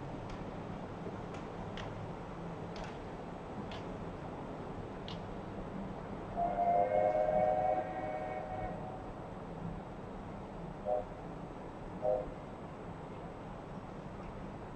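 A train horn sounds a chord of several tones in one long blast of about two and a half seconds, then two short toots about a second apart, over a steady background hum.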